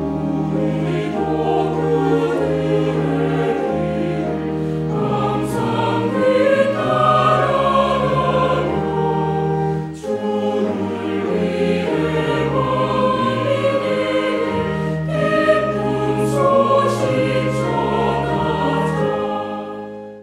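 A choir singing the recessional hymn that closes Mass, over sustained accompaniment with a low held bass. There is a short break between phrases about halfway through.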